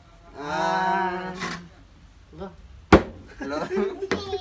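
A long drawn-out vocal call held for about a second, then a single sharp whack about three seconds in, the loudest sound, followed by short bits of voice.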